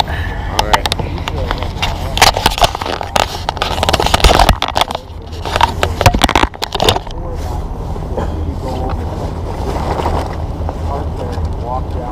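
Handling noise from a camera being moved about and set down on a dock: a run of sharp knocks, clicks and scrapes for about the first seven seconds, then calmer. Wind rumbles on the microphone throughout, and faint muffled talk comes through later.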